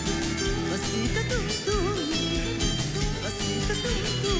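Live band music with a plucked acoustic guitar over a steady bass beat and a wavering melody line.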